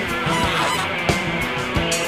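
Free-jazz band playing live: a tenor saxophone blows held, honking notes over a drum kit, electric bass and electric guitars, with drum strikes throughout.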